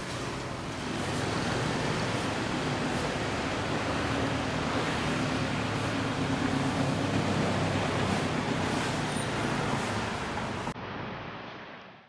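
Steady background noise of road traffic, a low engine hum under an even hiss, which thins out and fades away near the end.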